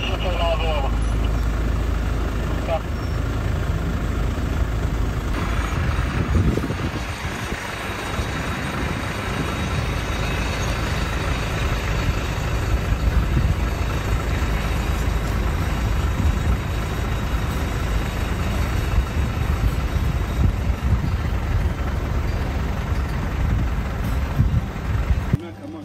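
A Toyota Land Cruiser Prado's engine running at low speed as the SUV crawls up a steep rocky step, a continuous low rumble. The sound changes about five seconds in.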